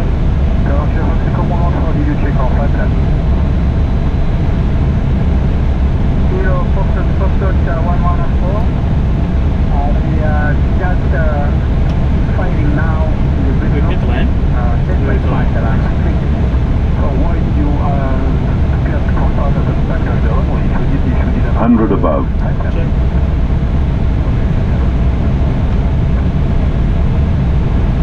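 Steady low rumble of airflow and engines in a jet airliner's cockpit on final approach, with faint voices coming and going over it.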